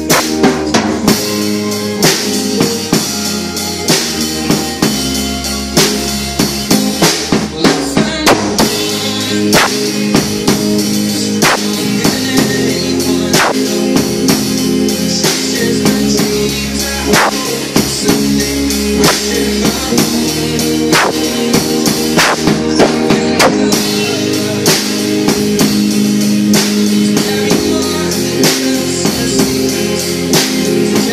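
Electric guitar and an acoustic drum kit playing together: held guitar chords over a steady drum beat, with cymbal and snare hits throughout.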